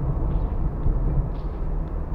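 Steady road and engine noise heard from inside a moving car: a continuous low rumble with tyre hiss.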